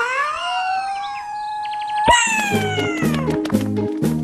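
A small cartoon character's long, high-pitched cartoon cry: it rises at the start and is held, then jumps higher with a knock about two seconds in and slides down. Background music with a plucked bass drops out under the cry and comes back in about halfway through.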